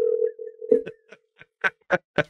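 Telephone ringing tone heard over the call line, a steady low beep that fades out about a second in. A few short clicks and brief bursts of sound follow as the call connects.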